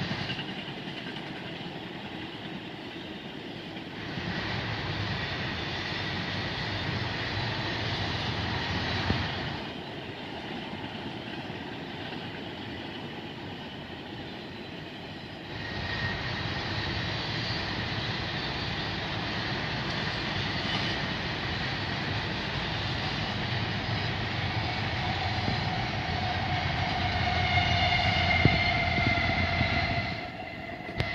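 Freight train cars rolling past, a continuous clatter and rumble of steel wheels on rail that swells and eases in stretches of several seconds as the cars go by. Over the last few seconds steady high-pitched tones join in and the sound builds to its loudest.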